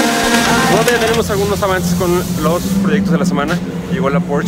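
Background music that cuts off about a second in, followed by a man talking over a steady low hum.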